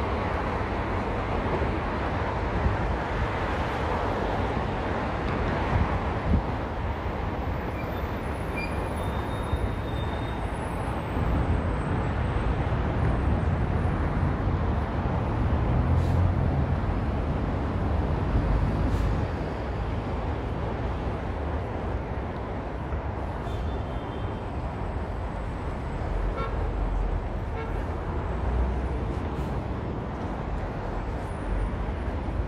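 Steady road traffic from cars and buses on a wide multi-lane city street, a continuous rush of engines and tyres. A deeper rumble builds for several seconds around the middle as heavier traffic passes, then eases.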